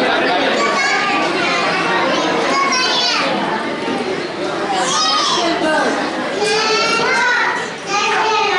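Small children's high-pitched voices speaking into microphones, with more children's chatter mixed in, heard in a large hall.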